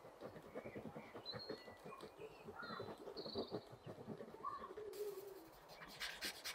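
Mechanical pencil lead scratching across Bristol board in quick short shading strokes, with a few faint high chirps in the background. About five seconds in it switches abruptly to a brighter, hissier rubbing from a paper blending stump smoothing the graphite.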